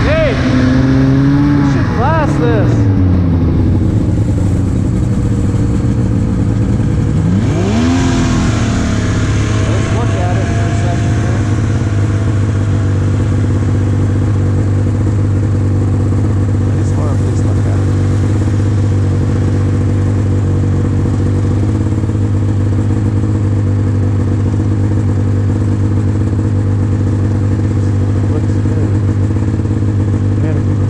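Old snowmobile's two-stroke engine. Its pitch drops and rises with the throttle in the first several seconds, then it runs on at a steady drone.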